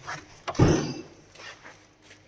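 A brief scraping knock about half a second in, then a couple of fainter knocks, as the plywood shipping crate and its bubble-wrapped load are handled.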